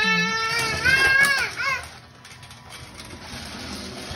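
A toddler's drawn-out, wavering vocal cry for about a second and a half. It breaks off into a short second call, then gives way to quieter background noise.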